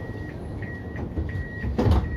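Siemens ULF A1 tram standing with its door warning beeping: a high-pitched beep repeating about every two-thirds of a second over the tram's low hum. A short, loud noise cuts in near the end.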